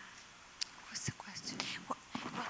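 Faint whispering and low murmured voices, a few short hissy syllables with quiet gaps between them.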